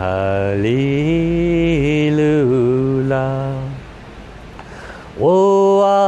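A man chanting a slow mantra in long held syllables, his pitch stepping up about a second in. It breaks off for over a second, then the next held note begins near the end.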